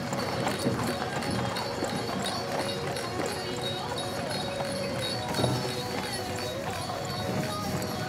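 A horse's hooves clip-clopping on a dirt track while it pulls a small cart rolling along, with people's voices, over music.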